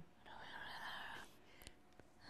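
Soft whispering: a single short whispered phrase about a second long.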